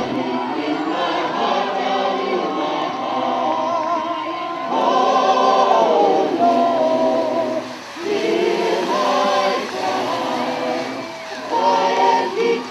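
Choral music: several voices singing long, held notes.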